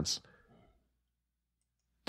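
A man's voice trailing off at the end of a word, then a pause of near silence with a couple of faint clicks.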